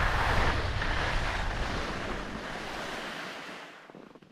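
Wind buffeting the camera microphone and skis hissing over groomed snow during a downhill run, fading away near the end as the skier slows.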